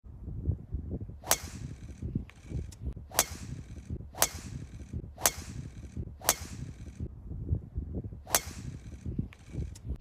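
Golf driver striking balls off the tee: six sharp cracks of the clubhead on the ball, roughly a second or two apart, with a few fainter clicks between, over a low background rumble.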